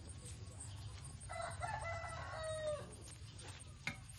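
A rooster crowing once, a single call of about a second and a half starting about a second in, over a steady low rumble. A sharp click sounds near the end.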